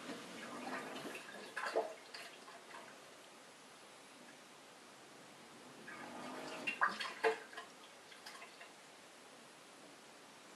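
Bosch SHE4AP02UC dishwasher drain pump running in two short bursts of about two seconds each, water gurgling through it, and stopping in between. This is the start-and-stop fault: the pump keeps cutting out while water is still in the sump and fails to pump much of it out.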